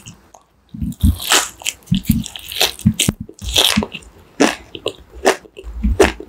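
Close-miked biting into and chewing crunchy food: after a brief quiet moment, an irregular run of crisp crunches, a few each second.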